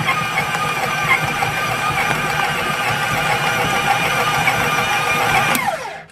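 KitchenAid stand mixer running at speed, its dough hook kneading a ball of bread dough with a steady motor hum. Near the end it is switched off and the motor winds down, falling in pitch.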